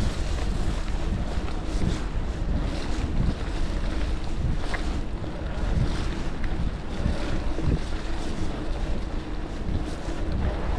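Wind buffeting an action camera's microphone while a gravel bike rolls along a leaf-covered dirt path, with a steady low rumble of the tyres on the ground and a few faint ticks.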